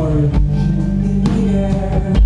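Live indie rock band playing: electric guitar and bowed violin over drums, with a drum hit about once a second.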